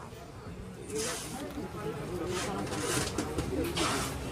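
Rustling of clothes and plastic wrapping being handled and sorted on a pile of shirts, with faint voices chattering in the background.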